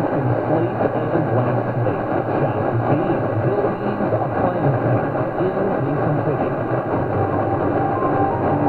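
Philco 37-60 tube radio tuned to a distant AM station on 1490 kHz: a steady, dense wash of static and noise, with the station's program audio faint and buried underneath.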